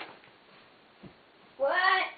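A cat meowing once near the end: a single loud call of about half a second, its pitch rising as it starts.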